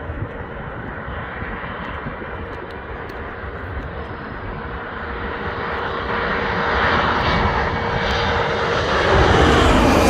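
Rear-engined regional jet on landing approach, its turbofan engines growing steadily louder as it closes in low overhead. A steady whine runs through the noise and starts to drop in pitch near the end as the jet passes over.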